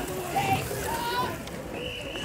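Voices without clear words, quieter than the laughing commentary just before.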